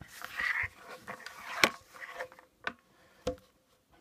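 Handling noise from a pair of binoculars and their padded neck strap: a soft rustle of the strap, then a few sharp clicks and knocks against a wooden tabletop, the loudest about one and a half seconds in.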